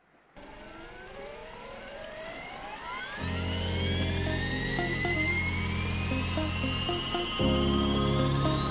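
Background music: a long rising synth sweep opens it, and sustained bass chords come in about three seconds in and change near the end.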